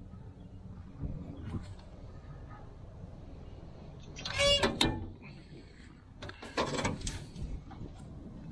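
Metal equipment-compartment door on a fire truck's body being opened: a short, high squeal from the hinge about halfway through, then a few knocks and rattles of the metal door.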